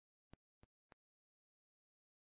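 Near silence: a dead, empty soundtrack broken by three very faint, short clicks about a third of a second apart in the first second.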